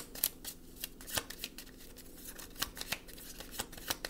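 A deck of tarot cards being shuffled by hand: a run of irregularly spaced sharp card clicks and flicks.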